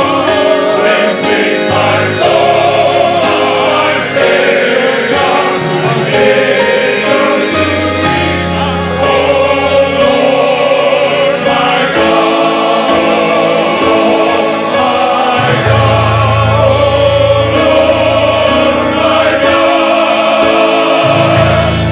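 Men's chorus singing a gospel hymn, with deep bass voices under the harmony. Long low bass notes are held beneath the singing, changing every few seconds.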